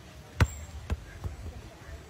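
A football bouncing on a painted wooden board: a sharp thud about half a second in, a second thud about half a second later, then a fainter third.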